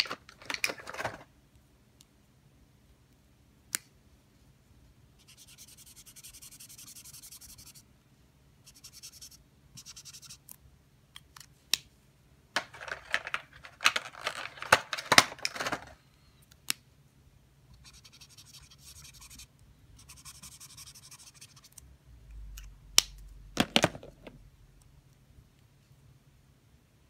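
Marker nibs scratching across paper in spells of short colouring strokes, broken by sharp clicks and rustling as the plastic markers and their caps are handled. The loudest clicks come near the end.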